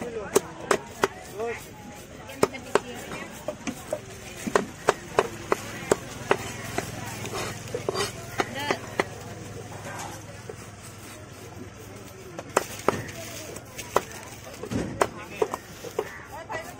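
A heavy curved chopping knife cutting through a surmai (king mackerel) and striking the stone slab beneath: a series of sharp, irregular chops, often in quick runs of two or three.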